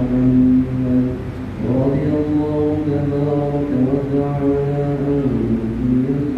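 A man's voice chanting Arabic in long, drawn-out melodic notes, with a short break about a second and a half in before the next phrase. This is the devotional recitation that fills the pause between the two parts of the Friday sermon.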